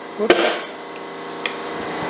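A single sharp knock about a third of a second in, made while handling the injection molding press, then a faint click a second later, over a steady background hum.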